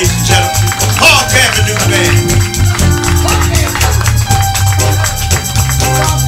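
A live band playing, with congas, drum kit, bass, keyboard and electric guitar over a steady bass line, and a voice singing briefly near the start.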